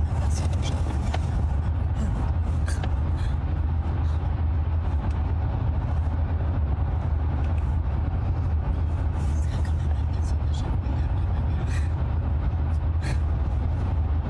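Steady low rumble of road and engine noise inside a moving car's cabin, with a woman's voice quietly speaking over it as she rehearses lines.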